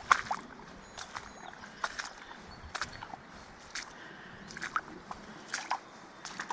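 Footsteps along a wet, puddled path of gravel, mud and grass, a short sharp step about once a second.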